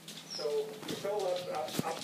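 A dog whimpering, under background talk.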